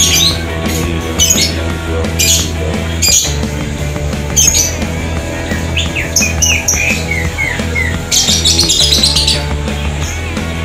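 Music with a steady bass line and a regular beat, with a quick run of short, high, falling chirps in the second half.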